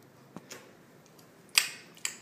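A small child's mouth sucking and smacking on her finger as she licks sauce off it: a couple of faint clicks, then a sharp wet smack about one and a half seconds in.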